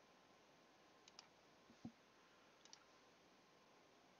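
Near silence with three faint computer-mouse clicks about a second apart.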